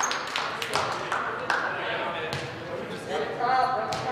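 Players calling out in a large echoing gym, with a run of sharp taps and claps in the first second and a half and a louder shout near the end.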